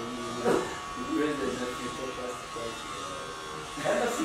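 Conversation between men, talking into a microphone, with a steady high-pitched electrical buzz running underneath.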